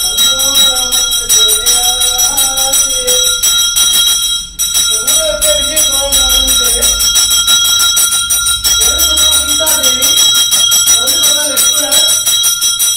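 A hand-held puja bell is rung rapidly and without pause, its steady high ringing tones running throughout. Under it a man's voice chants, breaking off briefly about four and a half seconds in.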